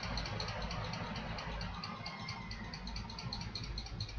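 Steady background hiss with a low hum, no distinct event: the room and recording noise of a pause in a recorded talk.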